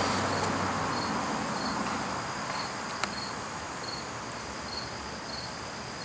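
An insect, cricket-like, chirping in short high pulses at an even pace, about one every half second or so, over a steady background hiss. A single sharp click sounds about three seconds in.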